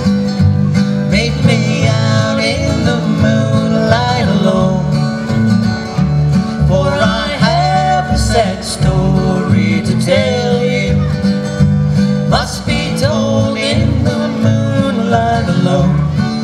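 Acoustic guitar and upright bass playing a bluegrass song live, the bass holding steady low notes under a melody that slides in pitch.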